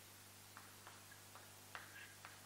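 Chalk writing on a chalkboard: a few faint, short taps and scratches as strokes are drawn, the loudest near the end, over a low steady hum.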